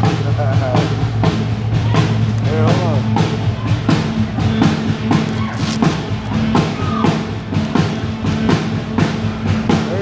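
Live rock band playing loudly: drum-kit hits on a steady beat over a held bass, with sliding, bending lead notes on top.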